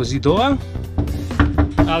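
Male voice with background music.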